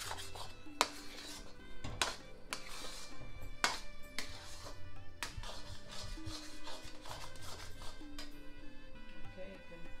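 A metal spatula stirs thick semolina halwa in a metal kadai and scrapes the pan bottom to keep it from catching, with a sharp scrape every second or so, loudest in the first half. Background music with steady held notes plays throughout.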